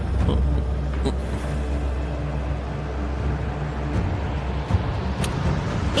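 Dramatic background score under a wordless reaction shot: a low, sustained rumbling drone over a noisy haze, whose low notes change about four seconds in.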